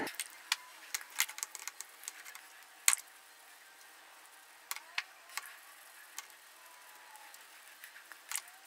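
Toothbrush scrubbing a small metal suspension bolt over a glass dish of mineral spirits and water: faint, irregular clicks and taps of bristles, bolt and dish, the loudest about three seconds in.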